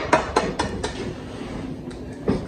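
A quick run of light, sharp taps, about four a second, dying away within the first second.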